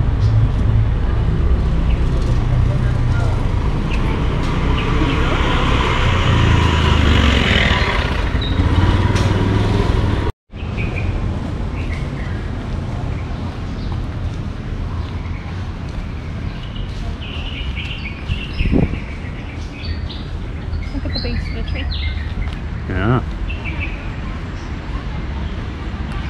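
Outdoor city background with a steady low traffic rumble, heaviest in the first ten seconds. The sound cuts out briefly about ten seconds in. After that the background is quieter, with small birds chirping now and then.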